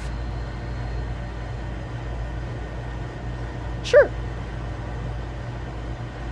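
Steady low background hum of the room, with no other sound apart from one short spoken word, "sure", about four seconds in.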